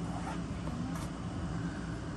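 A steady low background hum, with a faint voice sound briefly in the first second.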